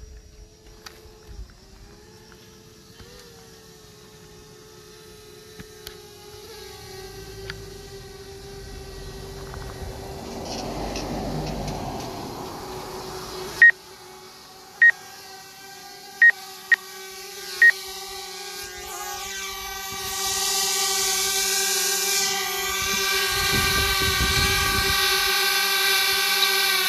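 Quadcopter drone's propellers humming steadily, growing louder near the end as the drone descends toward its landing spot. A short series of five high, loud beeps about halfway through.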